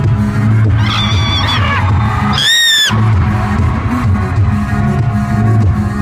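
Live pop band music played loud through an arena PA, bass-heavy and steady, with no singing. A little before the middle, a single high-pitched scream from the crowd near the microphone cuts through for about half a second.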